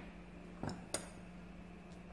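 Two light clicks, about a third of a second apart, of wooden colored pencils knocking on the tabletop and against each other as one is set down and another picked up.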